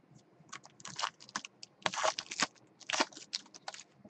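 Foil wrapper of a Panini Prizm trading-card pack being torn open and crinkled by hand: a string of short crackling rustles.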